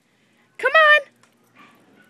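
A small dog gives one high-pitched whining yelp about half a second in, its pitch rising and then falling over less than half a second.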